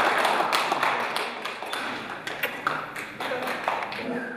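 Audience applauding: a dense round of clapping, loudest at the start and thinning out to scattered single claps toward the end.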